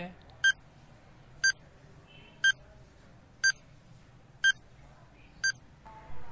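Countdown timer sound effect: six short, identical electronic beeps, one each second, counting off the seconds allowed to answer.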